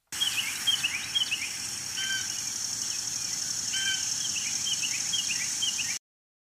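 Birds calling outdoors: runs of short, quick falling chirps, with two longer calls about two seconds in and near four seconds, over a steady high hiss. The sound starts suddenly and cuts off suddenly.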